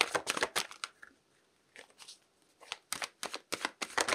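A tarot deck shuffled by hand: runs of quick, crisp card clicks and flicks, with a short pause about a second in before the shuffling goes on.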